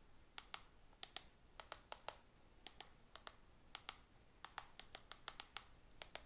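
Faint, irregular clicking of keys as someone types on a Rii i8 mini wireless handheld keyboard, several key presses a second.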